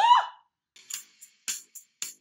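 A woman's cheer of "Woo!", rising and then falling in pitch, at the start. After it comes music made of sparse, sharp percussion hits.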